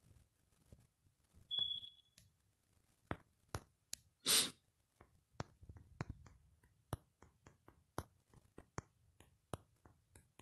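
Irregular key-press clicks from a smartphone's on-screen keyboard as a message is typed, coming faster in the second half. A short high beep sounds about one and a half seconds in, and a short breathy burst of noise about four seconds in is the loudest moment.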